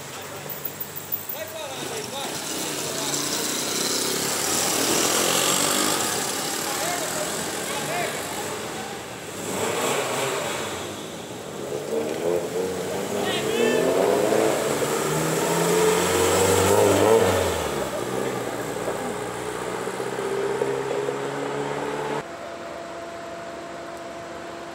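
A car engine running on a street, with voices talking over it; the sound drops suddenly near the end to a quieter steady hum.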